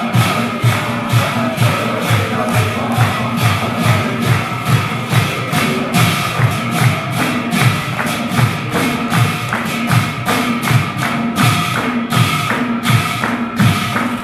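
Assamese devotional naam in a prayer hall: a group of devotees sings with hand-clapping and percussion over a steady low drum beat, about two to three strokes a second.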